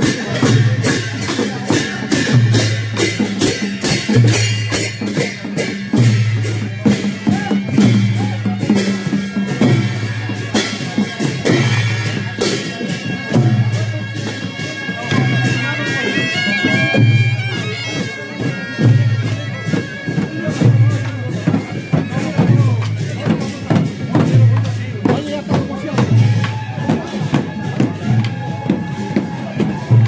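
Traditional processional music: a drum beating steadily about once a second under a brass horn sounding long held notes, with crowd voices around.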